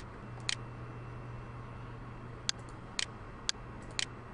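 Computer mouse clicking: about six single, sharp clicks at uneven spacing, over a low steady hum.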